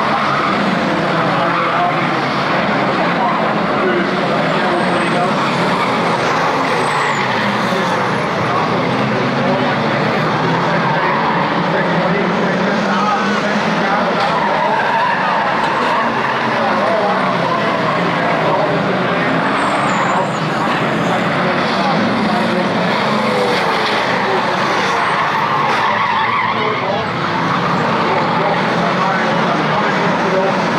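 Engines of a pack of saloon stock cars racing together, revving up and down continuously as they lap the track.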